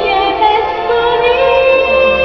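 A woman singing a song with instrumental accompaniment in a live concert performance. From about the middle she settles into a long held note.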